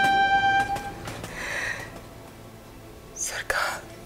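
A train horn holds one steady tone and stops about a second in, over the regular clacking of the train's wheels. Then come two short, breathy whispers.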